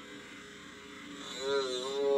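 Low, steady electrical hum, then about one and a half seconds in a drawn-out, wavering voice, heard as playback through a computer's speakers.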